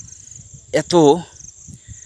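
Insects calling outdoors: a steady high-pitched buzz that runs on without a break, with a man speaking a single word about a second in.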